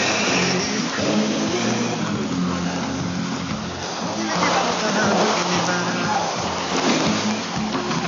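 Music from a Radio Guinea shortwave AM broadcast on 9650 kHz, received weakly, so it is heard through a constant bed of static hiss.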